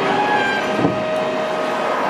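City street traffic with a car passing, from a film soundtrack played through a hall's speakers, with held musical notes running under it. A single short knock comes a little under a second in.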